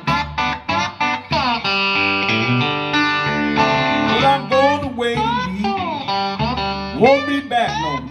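Electric guitar playing a blues instrumental break between verses, with notes sliding and bending up and down in pitch.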